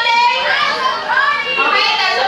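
A roomful of people, children among them, talking and calling out at once in a loud jumble of overlapping voices.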